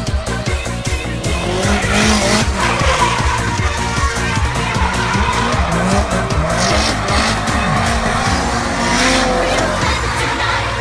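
Nissan Silvia S15 drift car sliding through corners, its engine revving up and down with tyre squeal, starting about a second and a half in. Electronic music with a steady beat plays throughout.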